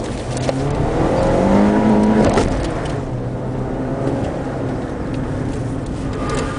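Car engine heard from inside the cabin, revving up in a steady rise for over a second, then dropping away sharply about two and a half seconds in and running lower and steadier after.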